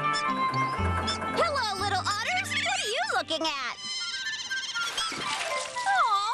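Light children's background music with high-pitched, squeaky chattering calls from cartoon otters, starting about a second and a half in and running for about two seconds, with another short squeak at the end.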